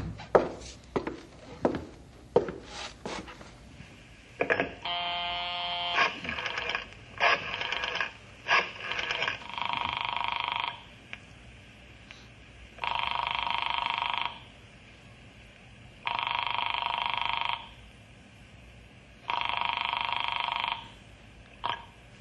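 Radio-drama sound effect of a telephone call being placed. A series of clicks and knocks as the call is put through is followed by a brief buzzing tone. Then a telephone rings four times, each ring about a second and a half long and about three seconds apart, and a click near the end marks the receiver being picked up.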